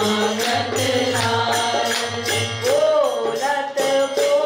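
A woman singing a devotional Hindi verse in a slow melody with ornamented, wavering held notes, over harmonium accompaniment. A steady, even percussion beat runs underneath.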